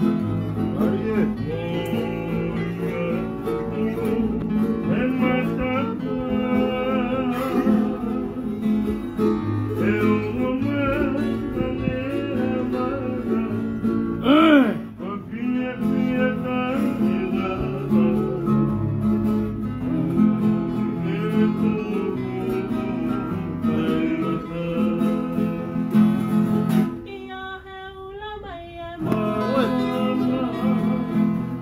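Acoustic guitar strummed as accompaniment to singing of a Tongan song. Near the end the guitar drops out for about two seconds, leaving the voice alone, before it comes back in.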